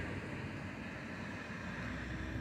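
Steady low rumble of outdoor street ambience, with traffic noise and no distinct events.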